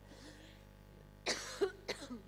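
A woman coughing: one strong cough a little over a second in, followed by two smaller ones, as she chokes on a sip of mate.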